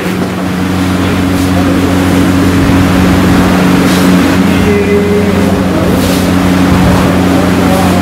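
Loud, steady mechanical drone, a motor or engine running, with a constant low hum under a wash of noise.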